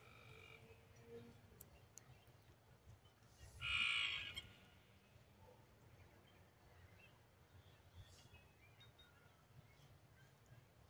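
A single animal call lasting under a second, about four seconds in, the loudest sound, over an otherwise quiet outdoor background with a few faint clicks.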